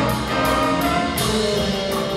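Live jazz ensemble playing with a choir singing held notes over it, the drum kit's cymbals keeping a steady beat of about three strokes a second.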